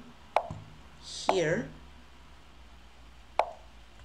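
Short sharp clicks of online chess move sound effects as pieces are played in a fast game, one near the start and one near the end, with a brief voice-like sound falling in pitch about a second in.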